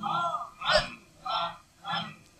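Four short, high, nasal voice-like calls, evenly spaced about two every second, in a gap between sung lines of a devotional song.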